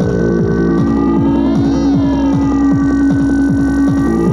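Tribal tekno from a Korg Electribe R mkII drum machine: a fast run of short percussion hits, each falling in pitch, over a steady low pulse, with a held tone coming in about a second in.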